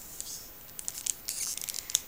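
Foil wrapper of a Pokémon trading-card pack crinkling and rustling in the hands, a scatter of short crackles starting about half a second in.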